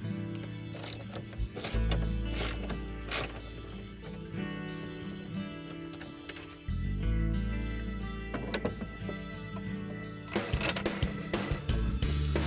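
Background music with a steady bass line. Over it a socket ratchet clicks in short runs as a bolt is backed out, with a quicker run of clicks near the end.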